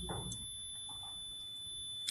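A mechanical buzzer sounding a steady high-pitched tone, setting up standing waves inside a clear acrylic box against a reflecting surface.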